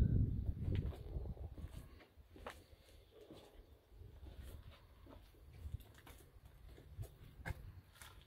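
Faint footsteps and scattered soft knocks as a person moves about with a handheld camera. A low rumble at the start dies away after about two seconds.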